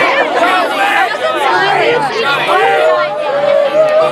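A crowd of children talking and calling out all at once in loud, overlapping chatter.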